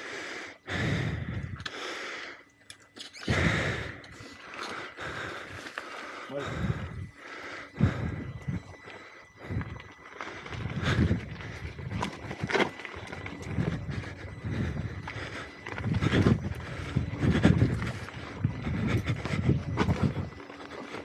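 A rider's heavy, irregular breathing, puffing every second or two from the effort of riding an electric unicycle uphill on a rocky dirt trail, over steady tyre and trail noise.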